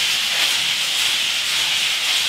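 Hand float rubbing over a perlite render shell on a brick oven dome, a steady scraping hiss. The render has started to firm up, so the float floats over the surface instead of digging into it.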